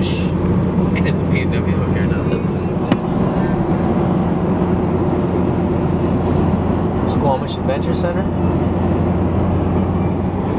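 Steady engine and tyre noise inside the cab of a truck driving on the highway, with a constant low hum and a sharp click about three seconds in.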